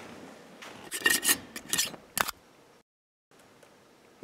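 Handling noise from a man shifting in his seat with a rifle on his lap: a few short scrapes and rubs, one with a brief squeak, then a sharp click. A brief dropout to dead silence follows about three seconds in.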